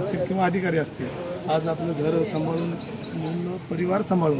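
A small bird calling in a quick run of about ten short, high chirps lasting a little over two seconds, over a man talking.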